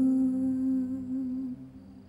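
Background music: a wordless voice humming one long, low, steady note that fades away about a second and a half in.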